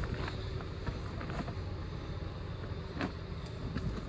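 Steady low background rumble, with a faint click about three seconds in.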